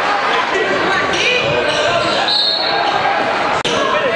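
Live basketball game sound in a gymnasium: crowd chatter echoing through the hall, with a ball dribbling and short high sneaker squeaks on the hardwood floor. The sound drops out for an instant near the end.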